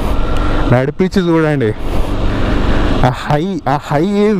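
KTM 390 Adventure's single-cylinder engine running at low speed on beach sand, under steady wind noise on the microphone. A man's voice comes in twice over it.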